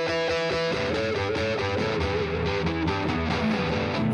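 Electric blues guitar played live with band backing, holding and bending notes in an instrumental fill.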